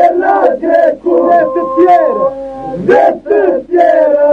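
Albanian Lab men's group singing in polyphony: voices glide and call over a held drone. The singing breaks off briefly about a second in and again near three seconds.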